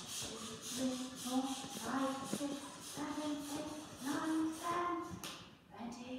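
Hand balloon pump inflating a balloon: a fast run of short hissing air strokes that stops about five seconds in, while a voice hums a rising series of held notes.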